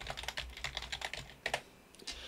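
Typing on a computer keyboard: a quick run of keystrokes, with a sharper key click about one and a half seconds in.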